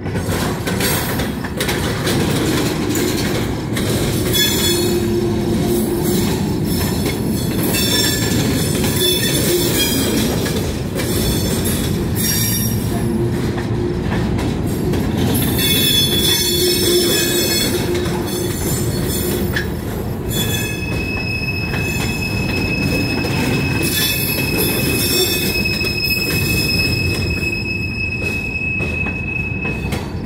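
Freight cars of a mixed manifest train rolling past close by, with a steady rumble of wheels on rail. Wheel flanges squeal against the rail on and off, then hold a steady high squeal for the last third.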